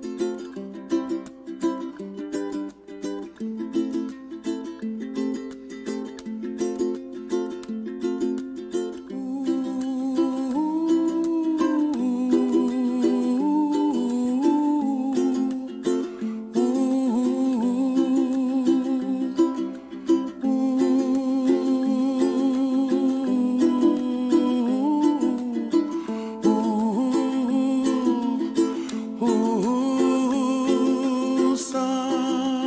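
Recorded music with no lyrics: a plucked string instrument plays quick picked notes, and about nine seconds in a louder sustained melody line with vibrato joins it.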